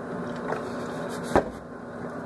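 Milk pouring from a plastic milk jug into a plastic blender cup, with a single knock about one and a half seconds in as the jug is set down. A microwave oven runs with a steady low hum throughout.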